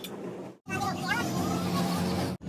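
A steady low hum that cuts out abruptly about half a second in, then returns with a brief voice over it.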